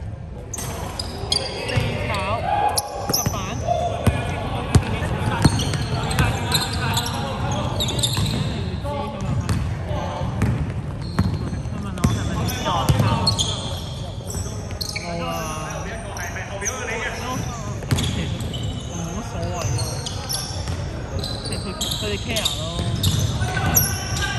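Basketball bouncing on a hardwood court during live play, a series of sharp knocks as it is dribbled up the floor, under players' voices and calls in a large sports hall.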